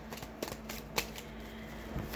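Tarot cards being handled and put back into the deck, with a couple of sharp card taps about half a second and a second in.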